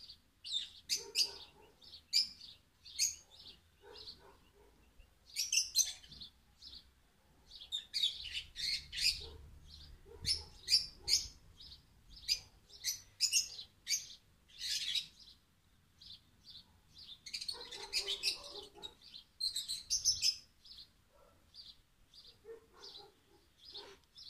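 Small birds chirping: short, high chirps coming irregularly, at times in quick runs.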